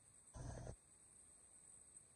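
Near silence: quiet room tone, with one brief muffled noise lasting under half a second shortly after the start.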